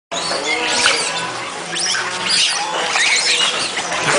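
A troop of macaques squealing and chirping, many short high squeaks overlapping and sliding up and down in pitch.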